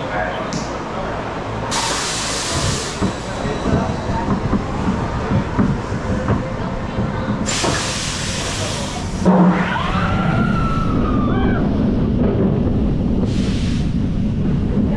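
An Intamin launched steel coaster train pulling out of the station: two long hisses of air from the ride's pneumatics, over the clatter and rumble of the wheels on the track. About nine seconds in comes a thump, then a louder steady rush of wind on the microphone as the train picks up speed, with riders whooping.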